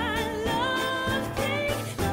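Live jazz ensemble music, a lead melody line with vibrato over the band.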